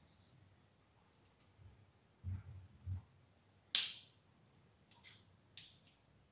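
Table knife handling spread from a glass jar and working it onto bread on a wooden cutting board: a few dull knocks, then one sharp click about four seconds in, the loudest sound, and a few lighter clicks after it.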